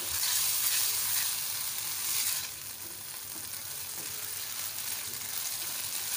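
Capsicum and onion sizzling in sauce in a non-stick kadai over a high flame while being stirred with a silicone spatula. The sizzle is loudest for the first couple of seconds, then settles lower.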